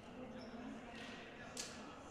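Faint futsal-hall ambience with a distant voice and one short sharp click about one and a half seconds in.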